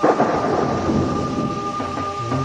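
A sudden rumbling crash like thunder, part of an Ethiopian pop song's intro, cuts off the held chord and dies away over about a second and a half. A high held note carries on faintly under it.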